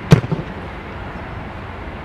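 A football struck hard with the instep of a boot: one sharp kick just after the start, followed by a couple of soft thuds, then steady outdoor background noise.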